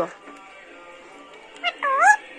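Pet green parakeet in its cage, mostly quiet, then giving short pitched calls near the end, the last one rising and falling.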